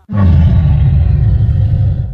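Loud, deep rumbling sound effect, low in pitch, that starts suddenly out of near silence and cuts off just after two seconds.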